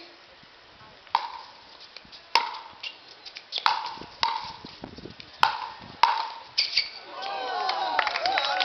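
A pickleball rally: about six sharp, hollow pocks of paddles striking the plastic ball, each with a brief ring, spaced under a second or so apart. Voices start near the end.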